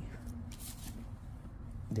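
Paper rustling briefly about half a second in as scratch-off tickets and a sheet of paper are handled on a table, with a few faint taps, over a low steady background hum.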